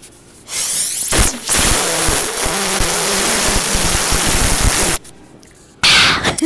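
Iced coffee slurped through a plastic straw right at an earbud microphone: a loud, hissing slurp starting about half a second in, holding steady, then cutting off abruptly about five seconds in, followed by a brief second slurp near the end.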